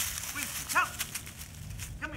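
Dry fallen leaves crackling and rustling as a dog noses and steps through them, with a brief pitched call about halfway through.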